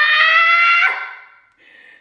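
A woman's excited, high-pitched "ah" squeal that glides up in pitch and is held for about a second before fading.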